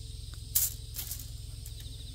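Bonsai training wire being handled and cut at its coil with wire cutters: two short, sharp scraping clicks, about half a second in and again a second in.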